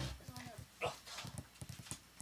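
A run of soft, irregular low knocks, several a second, mixed with brief bits of talk.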